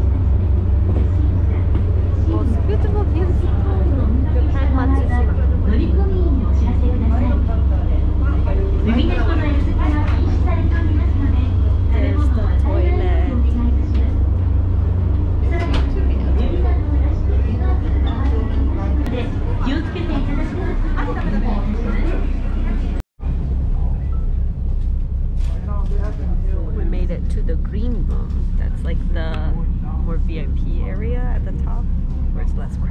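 Sightseeing boat's engine running with a steady, low, pulsing rumble, easing off somewhat about two-thirds of the way through, under the talk of passengers around it.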